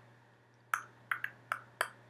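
A few short, sharp clicks at uneven intervals, five in all, starting about three-quarters of a second in, over a faint steady hum.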